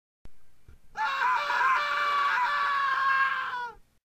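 A short click, then a person's high-pitched scream held for nearly three seconds, wavering a little at first and then steady, cut off just before the end.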